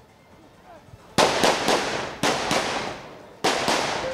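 Rifle gunfire: about seven sharp shots in three quick groups (three, then two, then two), starting about a second in, each ringing out briefly.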